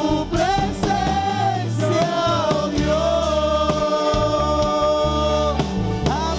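Gospel worship singing with instrumental backing: a sung melody over steady bass notes, holding one long note from about three seconds in until shortly before the end.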